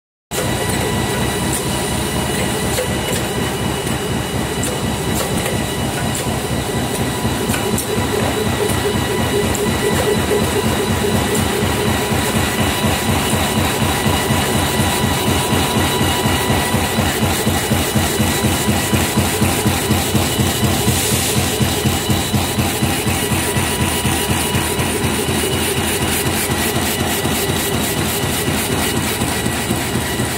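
HSYX-450X2 automatic bag-on-roll plastic bag making machine running: a loud, fast, even mechanical clatter over a constant high whine.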